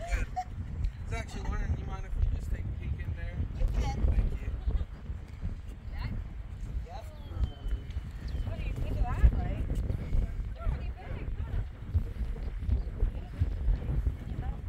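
Wind buffeting the microphone in a gusty low rumble, with faint, indistinct voices of people talking now and then.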